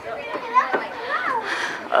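Voices of people talking, quieter than a close speaker, with no other clear sound.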